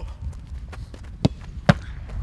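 Two sharp thuds of a football being struck, a little under half a second apart, the second the louder, over a steady low rumble.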